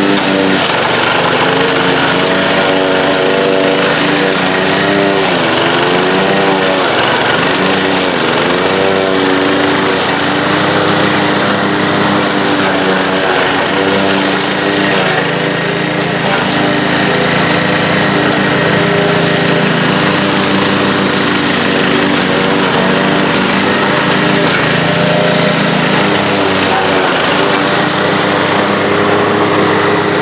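PowerSmart 209cc single-cylinder four-stroke push mower running under heavy load while mulching thick clumps of plants. Its engine note dips briefly several times a few seconds in as it chews through the clumps, then holds steady.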